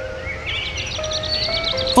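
Background cartoon score of held notes, with a flurry of short, high bird chirps twittering over it from about a third of a second in.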